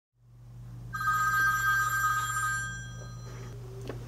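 A telephone ringing once: a steady two-tone ring starting about a second in, lasting a couple of seconds and then dying away, over a low steady hum.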